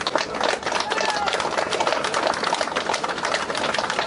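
Crowd clapping steadily, with a few voices mixed in.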